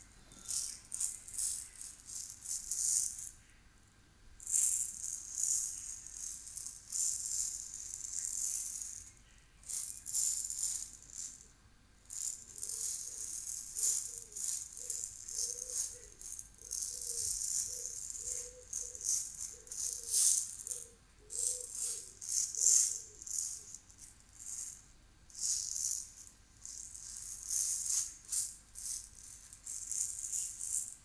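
Hand-held shaker rattle, shaken in runs of a few seconds with brief pauses between them.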